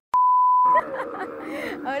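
A censor bleep: a single steady, loud beep tone lasting under a second that masks a swear word, starting just after a brief dropout of the sound. Excited voices follow.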